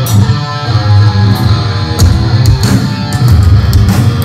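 A heavy rock band playing loud, live: electric guitar and bass guitar over drums, with cymbal crashes cutting through, about two seconds in among others.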